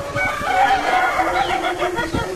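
A rooster crowing, one long call of about a second and a half, over background music.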